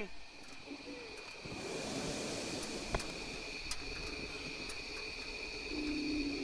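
A hot air balloon's propane burner firing: a steady rushing hiss that sets in about a second and a half in, quieter than the talk around it.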